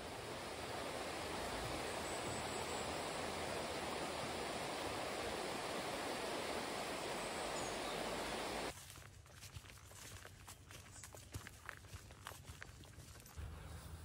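A stream rushing over rocks, a steady hiss of flowing water. About nine seconds in it cuts off suddenly, giving way to much quieter open-air sound with scattered light rustles and footsteps on grass.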